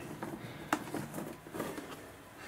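Cardboard box lid being worked off by hand: soft scraping and rustling of cardboard, with one sharp tap about three-quarters of a second in.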